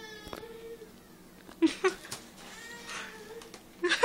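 High-pitched, muffled squeals of laughter from a young woman laughing through a mouth stuffed with pretzel sticks. One comes at the start, a louder one just under two seconds in, and another around three seconds.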